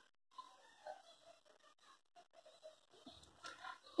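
Near silence: room tone with a few faint, soft, short noises, slightly more of them near the end.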